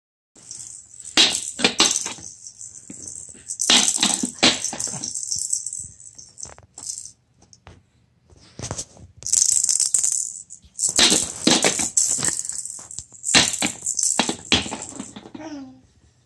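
Rattling, shaken in irregular bursts of one to two seconds with pauses between, a dry high hiss with sharp clicks. A short falling pitched sound comes near the end.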